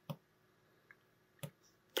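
Small plastic push buttons clicking as they are pressed: two sharp clicks about a second and a half apart, with a fainter tick between them.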